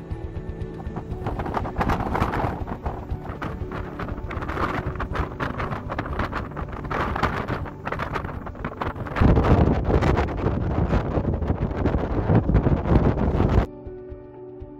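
Strong wind buffeting the microphone in gusts on a high mountain slope, a loud rumbling hiss that starts about a second in and grows heavier and deeper for the last few seconds before cutting off abruptly near the end. Music plays beneath it.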